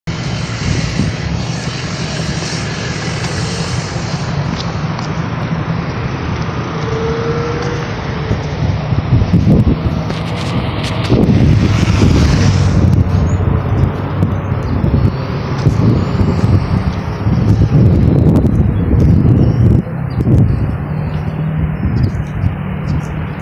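Road traffic passing through an intersection: cars and a truck driving by. About halfway through, a motorcycle passes close, and the traffic noise gets louder and more uneven from there on.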